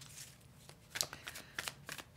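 A tarot deck being shuffled by hand: a faint string of irregular card clicks and flicks, starting about half a second in.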